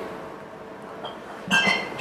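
A glass champagne flute set down on the bar with a brief glassy clink about one and a half seconds in, after a quiet stretch of room tone with a faint steady hum.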